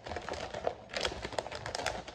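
Wrapping paper crinkling and crackling in quick, irregular clicks as it is rolled tightly around a chip can by hand.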